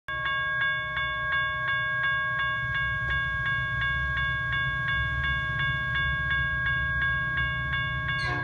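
Railroad grade-crossing warning bell ringing rapidly, about three strikes a second, over a low rumble as a Metra commuter train approaches.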